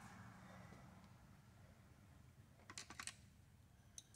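Near silence with a quick cluster of faint light clicks a little under three seconds in: small metal parts knocking against each other and the vise jaw as they are pushed by hand.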